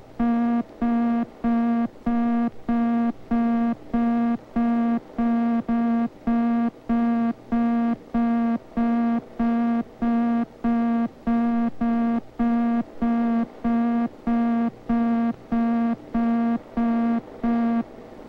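A long, even series of short, low, buzzy electronic beeps, about two a second. It is a film sound effect that marks the disk-pack access arms stepping through the records one after another in sequential access.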